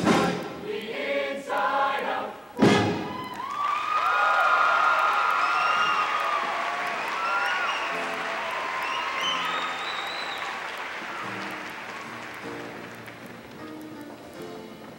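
A show choir singing, cut off by a loud final hit about two and a half seconds in. The audience then cheers with high screams and applause, slowly dying down.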